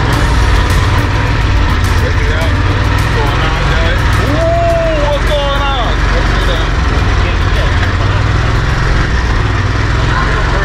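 An open vehicle's engine runs steadily with road rumble as it drives slowly. About halfway through there is a short wavering call, voice-like.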